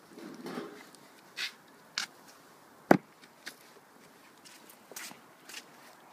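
A cooking pot being lifted off an open wood fire, with the fire crackling: a short scrape as the pot comes off, then scattered sharp cracks and knocks, one much louder knock about three seconds in.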